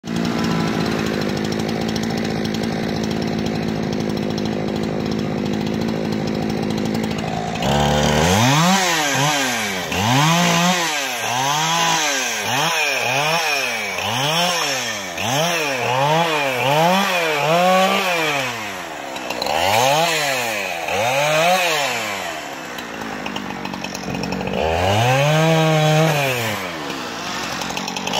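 Petrol chainsaw engine running at a steady speed for about the first eight seconds, then revved up and back down over and over, about once a second, with a longer rev held high near the end.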